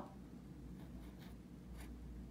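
Faint scratching strokes of a felt-tip pen on lined notebook paper as a dollar sign is written, a few short strokes about a second in and near the end.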